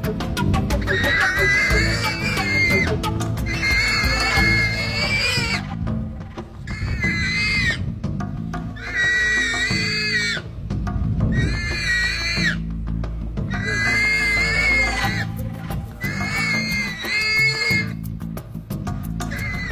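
A warthog screaming in distress while held in a leopard's jaws at the chest and throat: about seven long, high squeals, each a second or two, with short gaps between. Background music runs underneath.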